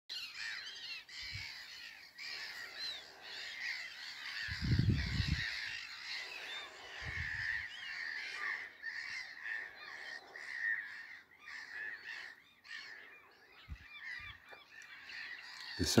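A busy chorus of many small birds chirping and singing continuously. Two short low sounds come through it, one about five seconds in and a shorter one about seven seconds in.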